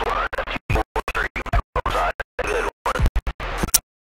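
A voice coming over the radio link that breaks up badly, chopped into short fragments by repeated sudden dropouts to silence, several times a second. It sounds stuttering and garbled rather than intelligible.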